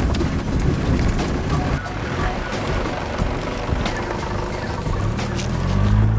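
A 4WD's engine running at low speed as the vehicle drives slowly along a rough bush track, growing louder near the end as it comes close past.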